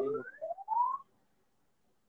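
Two short whistled tones, each rising in pitch, the second longer and lower, ending about a second in.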